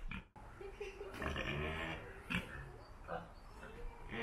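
A pig calling several times. The longest run of calls comes about a second in and lasts nearly a second, with shorter calls after it. The sound drops out briefly just after the start.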